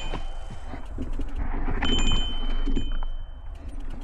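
A mountain bike being walked over rock and through brush: clicks, knocks and scraping from the bike and the undergrowth over a low rumble. About two seconds in, a thin high squeal holds for more than a second, then stops.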